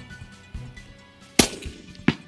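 A single shot from a bolt-action rifle fitted with a sound moderator, a sharp report about one and a half seconds in with a short ringing tail, over background music.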